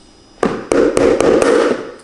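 An egg cracked on the rim of a mixing bowl: a sharp knock about half a second in, then a quick run of snapping cracks as the shell is broken open over the bowl.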